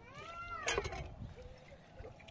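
A cat meows once, a single call that rises and falls in pitch, followed at once by a brief clatter.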